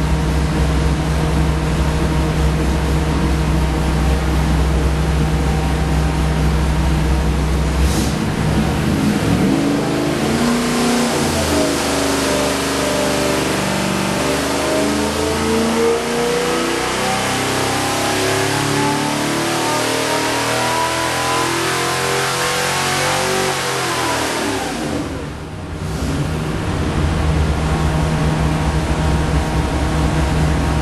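383 stroker small-block Chevy V8 running on an engine dyno: it idles steadily, then about ten seconds in it is loaded and pulled up through the revs in a steady rising sweep past 3,300 rpm. About thirteen seconds later it drops back quickly to idle.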